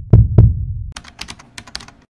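Intro logo sound effect: a deep double thump at the start, then about a second of quick, sharp clicks.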